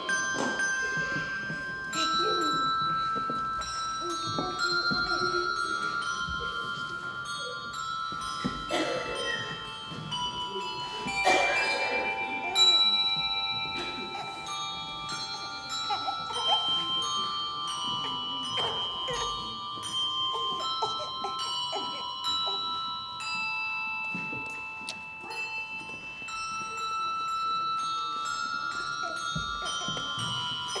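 Handbell choir playing: handbells hung on a rack are struck with mallets, and each note rings on and overlaps the next in a slow melody with chords.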